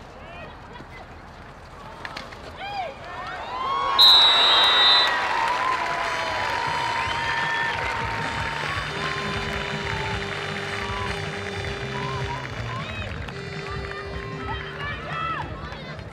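A stadium crowd cheering a goal in a field hockey match: cheering breaks out suddenly about four seconds in, with a short high whistle blast at its start, and carries on as a loud mix of shouting voices. A steady lower tone is held twice near the end.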